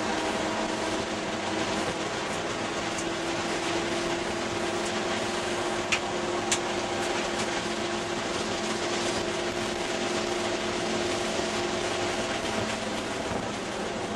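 Ford Escort ZX2's 2.0-litre four-cylinder engine running hard on track, heard from inside the cabin over wind and road noise, its pitch holding steady for most of the time and changing near the end. Two sharp clicks about six seconds in.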